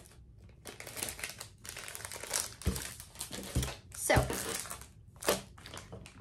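Plastic packaging bag crinkling and rustling as it is handled, with a few soft knocks in the middle.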